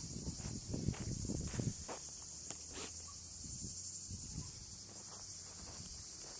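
A steady high insect chorus, with footsteps on a dirt track in the first couple of seconds.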